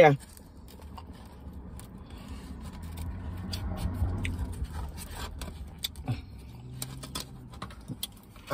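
Scattered light clicks and scrapes from a styrofoam takeout box and plastic spoon being handled while eating, over a low rumble that swells and fades around the middle.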